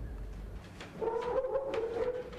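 A wind instrument plays one long, steady note that begins about a second in, the start of a short melody.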